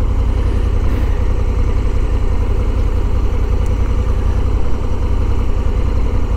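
Honda Africa Twin 1100 parallel-twin motorcycle engine idling steadily with a low, even rumble while the bike stands still.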